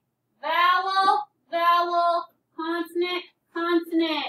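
Slow, sing-song speech: four long, evenly spaced syllables, the letters V, C, C, V spelled out one at a time.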